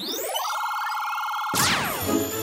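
Electronic cartoon machine sound effect as the switch is thrown: a whine rising in pitch, a steady tone held for about a second, then a burst of falling sweeps about one and a half seconds in.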